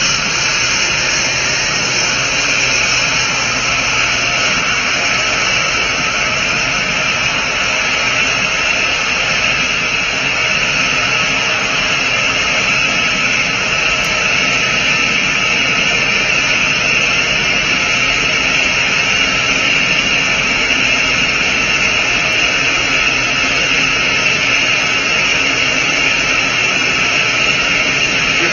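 Steady, unchanging rushing roar from a full-scale SLS five-segment solid rocket booster on a horizontal static-fire stand at burnout, as the forward and aft CO2 quench is fired into the motor.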